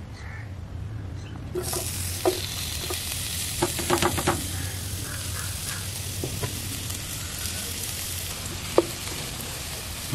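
Sliced red onions dropped into hot oil in a frying pan, setting off a sudden sizzle about a second and a half in that carries on steadily. A few sharp clicks and knocks come in the first seconds of the sizzle.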